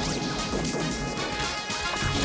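Bumper jingle music layered with cartoon-style sound effects: a busy run of crashes and clattering hits.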